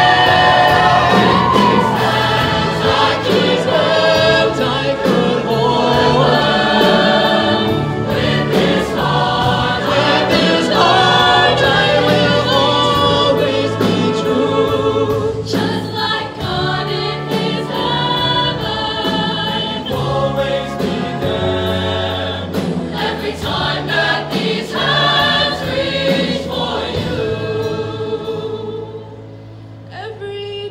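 Mixed show choir singing in full harmony over instrumental backing with a bass line and a beat. The music dips quieter just before the end.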